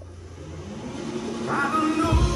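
A film soundtrack played through Starke Sound home-theatre speakers: a rising swell with a slowly climbing low pitch, getting steadily louder and leading straight into a loud rock concert song.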